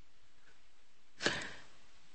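A pause in the talk: faint steady hiss, broken about a second in by one short puff of noise that fades within a moment.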